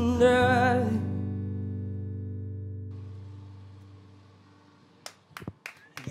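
The last sung note, held with vibrato, ends about a second in. The final guitar chord rings on and fades away over the next few seconds. A few short clicks come near the end.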